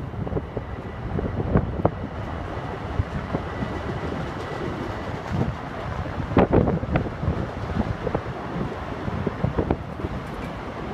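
Electric commuter train in the station below running with a steady low rumble, a faint thin whine for a few seconds early on, and a cluster of clanks about six seconds in; wind buffets the microphone.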